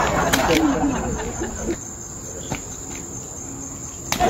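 Crickets chirping in a steady high trill. Voices and chatter die away over the first couple of seconds, and a few faint clicks sound.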